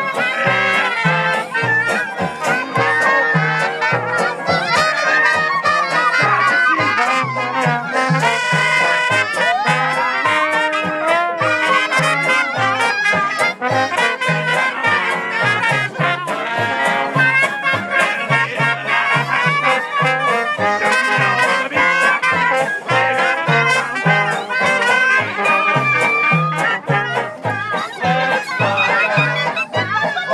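Live street band playing upbeat traditional jazz: trombone and trumpet leading over banjo, with a steady bass beat from a washtub bass.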